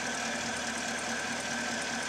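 2017 Chevrolet Camaro SS's 6.2-litre V8 idling steadily in park at about 640 rpm, with a faint steady high whine above it.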